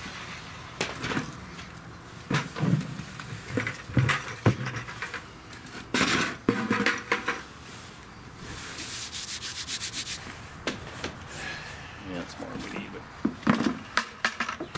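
Hands pressing, rubbing and smoothing sodium silicate moulding sand into a wooden casting flask: gritty scraping of sand on sand and wood, with scattered knocks and a quick run of ticks a little past the middle.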